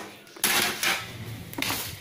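Ceiling-fan blades and parts being handled and shifted against each other on a table: a knock about half a second in, then light clattering and rustling.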